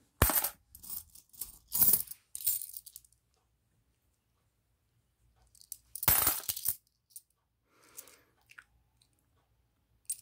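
500-won coins clinking against one another as they are handled and sorted by hand. There are several quick clatters in the first three seconds, a pause, then another clatter about six seconds in and a few faint clicks after.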